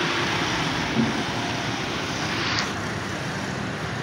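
Road traffic noise: a steady roar of passing vehicles that fades slowly.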